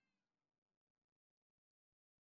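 Near silence: the sound drops out completely.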